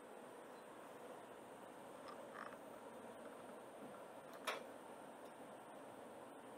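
Electric bakery deck oven being shut and set: a faint soft knock about two seconds in, then a single sharp metal click about four and a half seconds in, over a quiet steady hum.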